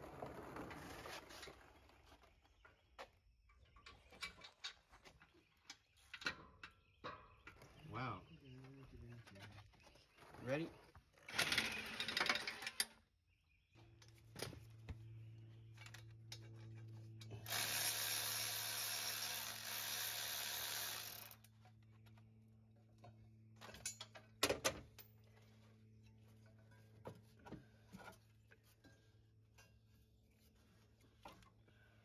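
Mechanic's tool work during exhaust and engine teardown: scattered clanks and knocks of metal parts and hand tools. A power tool runs in a short burst just before the middle and again for about four seconds later on, over a steady low hum.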